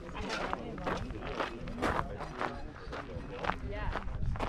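Footsteps on a gravel path at a walking pace, about two steps a second, with people's voices talking in the background.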